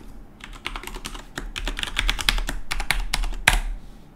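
Computer keyboard being typed on: a quick run of keystrokes entering a password, ending with one harder keystroke near the end.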